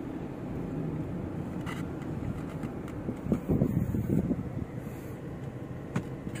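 Car road and engine noise heard from inside the cabin while driving, a steady low rumble, with a louder rumble for about a second a little past the middle.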